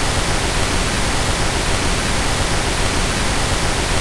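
Loud, steady static hiss like a dead TV channel, a noise effect under a 'technical difficulties' card that signals a broken transmission.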